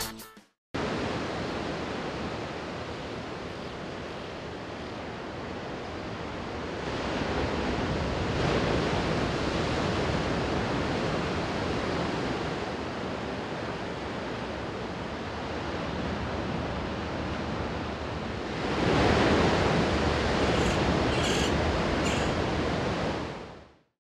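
Ocean surf washing on a beach: an even rush of noise that swells about eight seconds in and again more strongly about nineteen seconds in, with a few faint high chirps near the end before it fades out.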